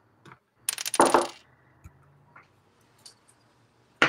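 A short rattling clatter of hard plastic model-kit parts about a second in, then a few faint single clicks as Gunpla parts are cut from the runner with hobby nippers and handled.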